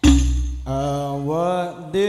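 A loud Al-Banjari frame-drum strike with a deep, lingering low boom, then a solo male voice begins a sholawat line about two-thirds of a second in, its long melismatic notes climbing and wavering.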